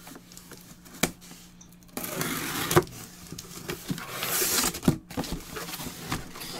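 A cardboard shipping case being handled: a sharp knock about a second in, then scraping and rustling of cardboard against the table and hands, with a few knocks.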